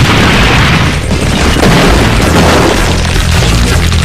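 Cartoon fight sound effects: repeated booming impacts and crashes over loud action music.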